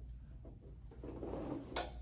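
A man's breathing over a steady low room hum: a soft breath out about a second in, then a short sharp breath in near the end.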